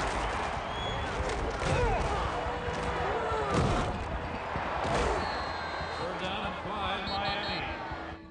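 Film sound mix of a football running play: players shouting over the stadium din, with heavy thuds of bodies and pads colliding, the biggest hits about two and three and a half seconds in.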